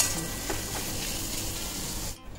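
Sliced onions sizzling in hot mustard oil in a metal kadai, with a spatula stirring them and knocking on the pan at the start and again about half a second in.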